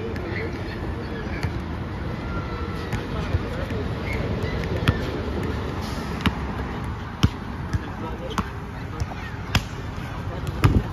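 A basketball bouncing on an outdoor asphalt court: a string of sharp, irregularly spaced thuds over steady open-air background noise.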